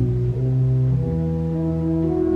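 Church organ playing slow, sustained chords; the chord changes about a second in.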